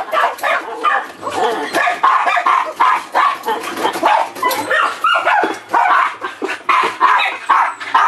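Dogs barking, short barks in quick succession at about two a second, with no pause.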